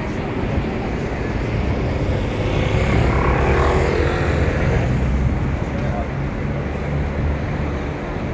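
City street traffic noise with wind buffeting the phone's microphone. A vehicle passes, loudest about halfway through.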